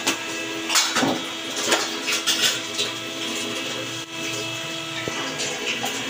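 Oil sizzling around potato fries deep-frying in a pan, with a wooden spoon scraping and stirring chicken in a steel pan: a few scrapes, most in the first three seconds, over a steady hum.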